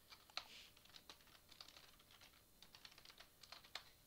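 Faint typing on a computer keyboard: a quick run of keystrokes that stops just before the end.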